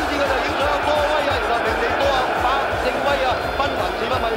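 Horse-race commentary from an old race broadcast, a voice calling the race without pause, with background music underneath.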